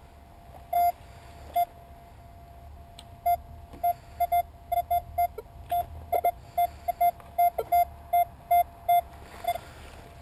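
Metal detector sounding a string of short, mid-pitched beeps as its coil is swept over the ground, all at the same pitch. They come sparsely at first, then thick and irregular from about three seconds in, as the detector signals metal in the ground. A faint steady tone at the same pitch runs between them.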